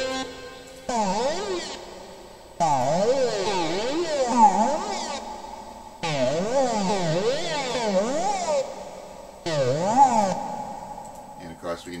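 Synthesized instrument notes played back in LMMS, a series of five sustained notes, each wobbling up and down in pitch several times in a zigzag, produced by note-detuning (pitch bend) automation.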